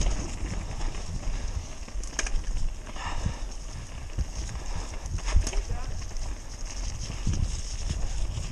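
Mountain bike ridden fast down a dirt forest singletrack, heard from the bike itself: a steady rumble of tyres on dirt, and irregular knocks and rattles from the frame and parts as it runs over bumps and roots.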